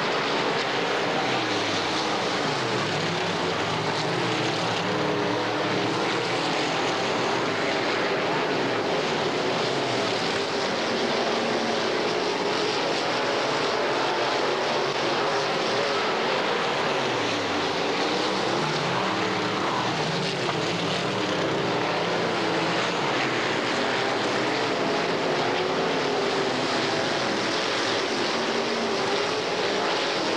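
Several dirt late model race cars' V8 engines running at racing speed on a dirt oval, their overlapping pitches sliding down and back up again and again as the cars lap.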